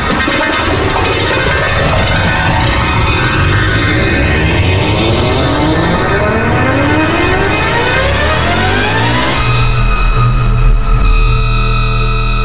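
Black MIDI played through the Khor Keys 3 piano soundfont with heavy reverb: a dense mass of piano notes with runs sweeping upward in pitch over several seconds. About nine seconds in it switches suddenly to a loud, sustained wall of many notes at once with heavy bass.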